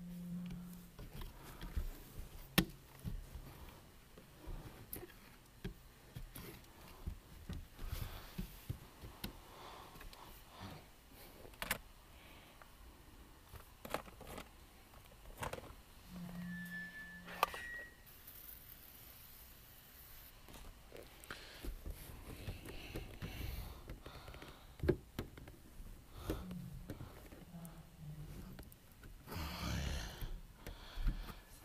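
Faint, scattered clicks, taps and knocks of hand tools and cloth being handled inside a car while film is fitted to a wet window, with a brief high squeak about seventeen seconds in.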